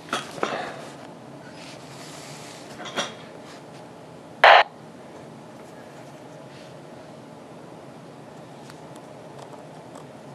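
Handling noise and faint button clicks on a Yaesu VX-8DR handheld radio, with one short, loud burst of noise about halfway through.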